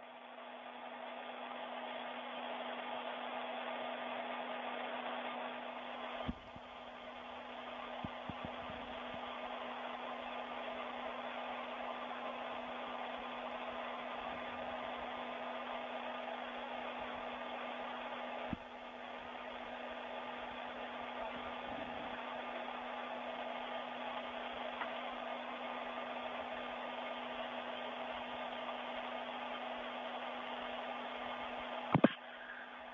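Steady rushing air noise of the space station's cabin ventilation and equipment, with a constant low hum underneath. A few faint knocks stand out, about six seconds in, around eight to nine seconds, and once more near the middle.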